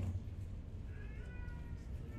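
A faint, high-pitched wavering cry starting about a second in, over quiet room tone in a large hall.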